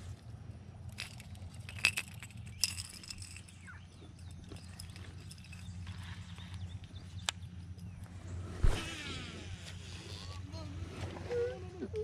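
A few sharp clicks of tackle being handled, then about eight and a half seconds in a single heavy splash of a person falling into the pond, followed by a few seconds of churning water.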